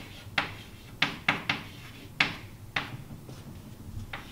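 Chalk writing on a blackboard: a string of short, sharp, irregularly spaced taps and scratching strokes as letters and symbols are written.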